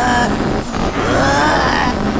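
Cartoon sound effect of a rubber balloon losing air: a continuous buzzy rush of escaping air with a wavering squeal that rises and falls.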